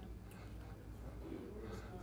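Quiet room tone with a low steady hum, and a faint, brief murmur of voice past the halfway point.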